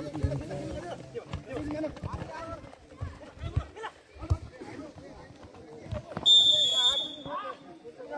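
Voices calling across a football pitch with the odd ball kick, then one short, sharp referee's whistle blast, loud and steady, about six seconds in.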